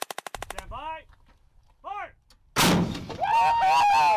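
A rapid burst of rifle fire, a dozen or so shots in about half a second. About two and a half seconds in comes a much louder deep boom from a towed howitzer firing, followed by a held tone that begins to fall.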